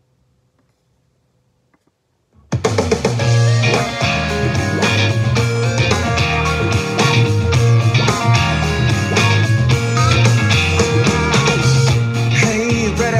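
Near silence, then about two and a half seconds in, a rock band's recording starts abruptly and plays on loudly: a live board mix taken straight from the mixing desk.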